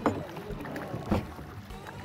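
Water splashing as a hooked brown trout thrashes at the surface beside the drift boat, with a few sudden splashes, the strongest near the start and just after a second in.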